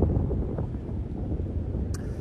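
Wind buffeting the phone's microphone: an uneven low rumble, with a short click near the end.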